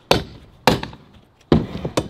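Stunt scooter's wheels and deck knocking against a wooden skatepark ramp: four sharp impacts spread unevenly across two seconds.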